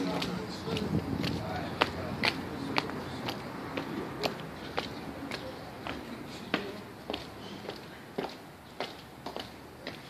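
Footsteps on a concrete floor, a steady walking pace of about two sharp steps a second.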